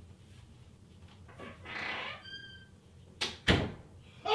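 Off-screen door and handling noises in a small room: a soft rustle and a brief squeak, then two sharp knocks about a third of a second apart near the end, the second the loudest.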